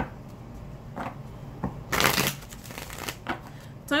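Tarot cards being shuffled by hand: a few short riffling rustles, the loudest and longest about two seconds in.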